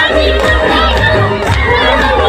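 A large crowd cheering and shouting over loud music with a heavy bass.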